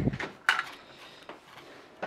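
LEGO plastic-brick model being handled and slid across the table: one sharp knock about half a second in, then a couple of faint clicks.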